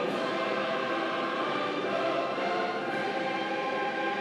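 A choir singing with musical accompaniment, in long held chords.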